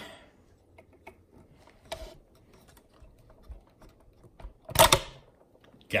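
Small metal clicks and taps of tweezers picking at a tiny roll pin inside a sewing machine's hook drive, with one sharp, louder click a little before five seconds in.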